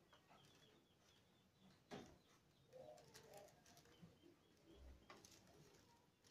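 Near silence with faint handling noise from rattan strands being woven around a basket handle, including a soft click about two seconds in and another just after five seconds.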